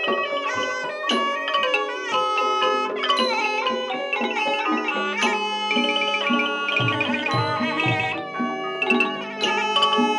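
Thai piphat mai khaeng ensemble playing: a reedy pi nai oboe melody over ranat xylophones and gong circles struck with hard mallets, with low drum strokes joining in the second half.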